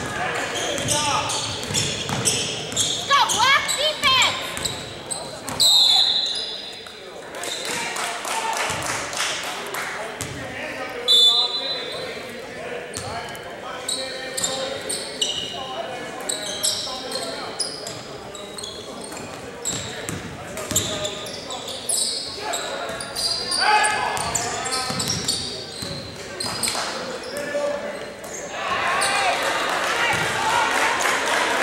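Basketball game sounds in a gym: a basketball bouncing and thumping on the hardwood court, with players' and spectators' voices calling out, all echoing in the large hall. A few short, high squeals cut through, the loudest about six and eleven seconds in.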